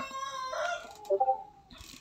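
A drawn-out animal call tails off over the first second, then a few short calls follow.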